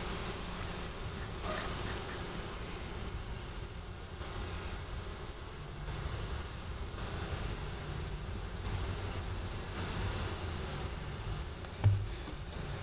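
Honeybees buzzing steadily around an open hive, with a single knock near the end.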